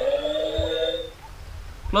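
Robot toy ATM coin bank playing an electronic sound through its small speaker: a held, slightly wavering tone that stops a little over a second in.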